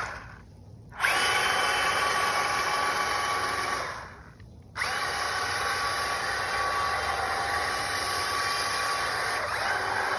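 Electric drive motor of a Spin Master All-Terrain Batmobile RC truck whining steadily under throttle as it churns through pond water. The whine drops away twice for under a second, near the start and around four seconds in, and comes back sharply each time as the throttle is reapplied.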